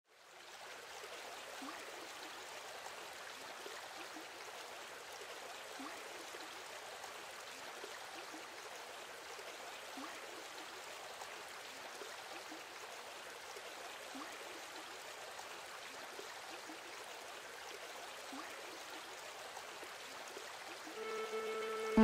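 Shallow river rushing steadily over rocks, fading in at the start. About a second before the end, a held musical tone comes in over the water and is louder than it.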